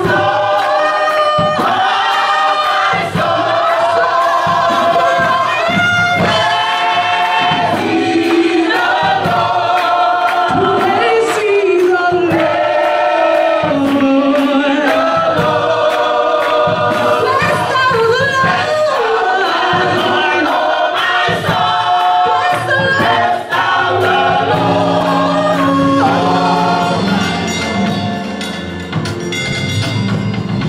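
Gospel choir singing with a woman leading on a microphone, over a steady beat.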